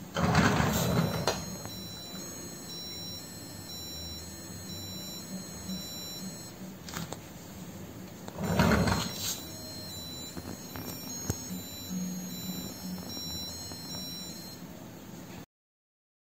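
Piezo buzzer in a 3D-printed Duplo block sounding a two-tone electronic siren, stepping back and forth between a higher and a lower beep, set off by moving the toy fire engine. Two knocks from the toy being handled, about half a second in and about eight and a half seconds in; the sound stops suddenly just before the end.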